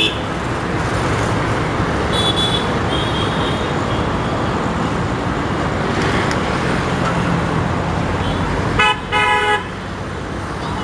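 Steady hum of road traffic with vehicle horns tooting. A faint horn sounds about two seconds in, and a loud, short double horn blast comes near the end.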